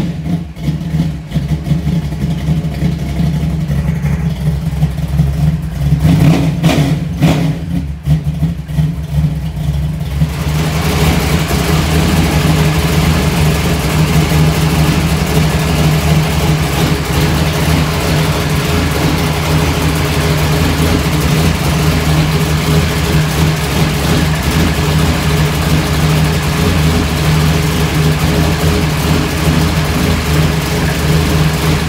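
Race car engine idling steadily, with a few short throttle blips in the first several seconds; from about ten seconds in it sounds fuller and brighter, heard close over the open engine bay. It is being run to get hot so the thermostat opens and air bubbles purge from the freshly refilled cooling system.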